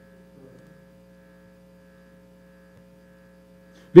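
Faint steady electrical hum made of a few unchanging tones, with no other sound until a man's voice starts right at the end.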